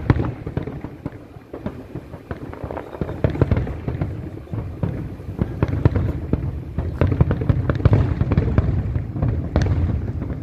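Aerial fireworks going off in a rapid, continuous barrage of bangs and crackles, growing louder about three seconds in.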